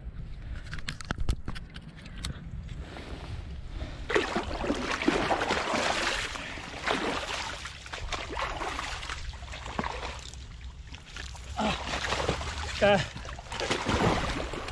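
Sloshing and splashing in muddy shallow water as a large wels catfish is returned to the river, in stretches of rushing noise over a steady low rumble.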